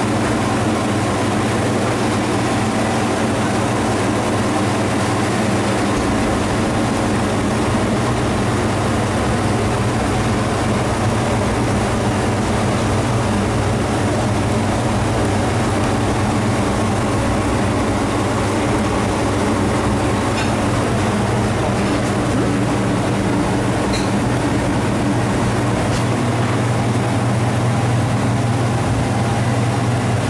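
Steady, loud mechanical drone of commercial kitchen fans, with a low hum under an even rush of air. A few faint clicks of food containers and utensils come about two-thirds of the way through.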